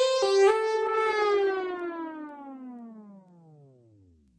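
The closing held note of an Italo disco track, a synthesizer sound with many overtones. About half a second in its pitch starts sliding steadily downward as it fades away.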